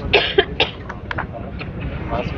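A person coughing, two short harsh coughs close together right at the start, followed by a few sharp clicks over a low background din.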